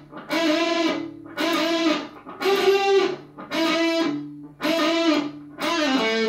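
Electric guitar (Gibson Les Paul) playing a short repeated lick from A minor pentatonic: a unison-style bend on the G string against the E at the B string's 5th fret, six times, about once a second. Each note is bent up into pitch and held briefly, with short gaps between.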